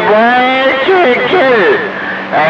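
Men's voices coming through a CB radio's receiver on channel 28, narrow-sounding and cut off in the highs, with more than one voice overlapping about a second in.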